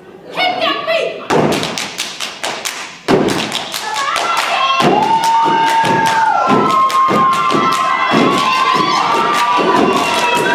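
A step team stomping and clapping in unison on a wooden stage, sharp thuds at about three a second starting about a second in, with voices yelling and calling out over the rhythm.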